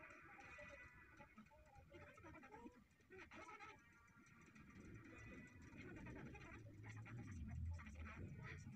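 Near silence: faint room tone, with a low rumble growing slightly louder in the second half.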